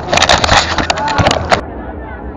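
Rubbing, rustling and knocking from a body-worn action camera's microphone as it moves against the wearer's clothing and gear, with a few sharp knocks and a brief faint voice. Near the end the sound cuts abruptly to a duller arena background.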